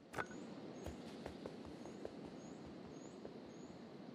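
Faint beach ambience from an animated soundtrack: a soft, steady background hiss with short, high bird chirps repeating about twice a second and a few light clicks.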